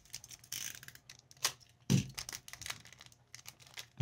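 Foil trading-card pack wrapper being torn and crinkled open by hand, in scattered short crackles and rips, with a soft thump about halfway through.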